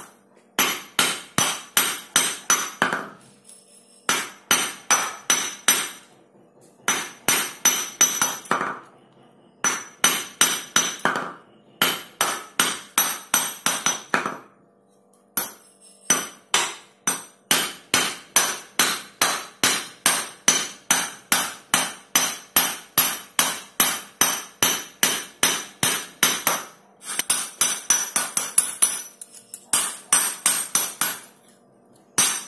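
A steel hammer strikes a thin silver strip on a small steel anvil, hammering it out flat. The blows are sharp and ringing, about three a second, in runs of a few seconds with short pauses and one long run in the second half.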